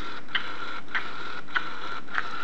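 Baby Alive doll's electronic mechanism running: a steady high whine broken by a sharp click about every 0.6 seconds.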